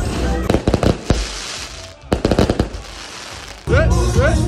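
Fireworks going off in quick volleys of sharp cracks, one burst about half a second in and another about two seconds in, with a hiss between them. Music starts up near the end.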